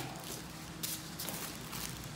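Clear plastic wrapping bag crinkling and a cardboard packing insert scraping as hands slide the insert out from the bag, with a few brief soft scrapes.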